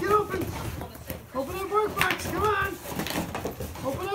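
Mostly a person's high, coaxing speech. Between the words there are a few short clicks and rustles as a dog paws and bites at a small cardboard box.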